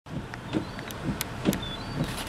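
A video camera's autofocus lens motor making short whirs, about two a second, as it hunts for focus in fog, with faint high ticks.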